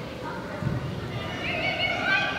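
Players' distant shouts and calls on a soccer field, with a high, wavering shout near the end.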